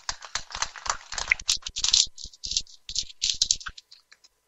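Dense, irregular clicking and rustling close to the microphone, with no speech.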